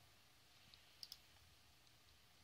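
Two faint computer mouse clicks about a second in, otherwise near silence.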